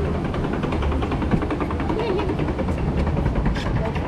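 River rapids ride raft moving along its channel: a steady low rumble with a fast, even rattle running through it, and riders' voices over it.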